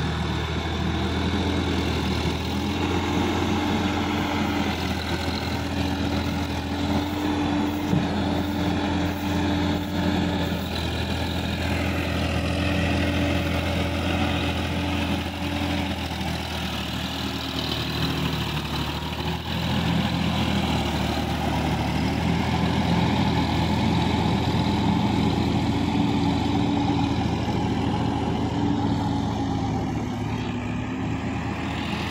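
Sonalika DI-50 RX tractor's diesel engine running steadily under load as it pulls cage wheels through a flooded paddy. The engine note rises and falls a little.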